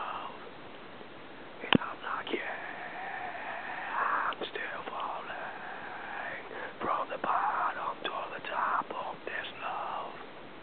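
A person's soft, whispery voice, with one long held note through the middle and more short breathy sounds near the end. A single sharp click, the loudest thing here, comes just before the held note.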